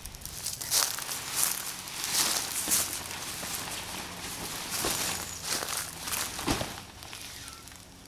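Nylon fabric of a Gazelle T4 pop-up hub tent rustling and flapping in irregular strokes as its walls are pulled out by the handles, mixed with footsteps on leaf litter and wood chips.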